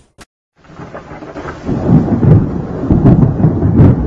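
Thunderstorm sound effect: after a brief silence, a low rumble of thunder builds and turns loud, with several sharp cracks over the hiss of rain.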